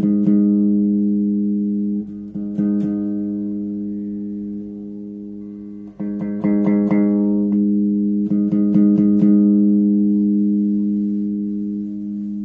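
A Peavey Zephyr five-string bass with passive pickups is played. Plucked notes ring on and slowly fade, and they are re-struck in short quick flurries a little past the middle and again later.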